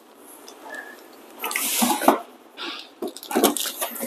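Plastic wrapping and cardboard packaging rustling and scraping as an espresso machine is lifted out of its box. The sound comes in short irregular rushes, the longest and loudest about a second and a half in, with a few sharp clicks near the end.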